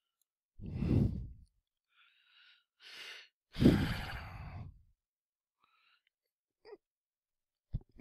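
A man sighing heavily twice close to the microphone, once near the start and again, louder, about halfway through, with a breath drawn in just before the second sigh.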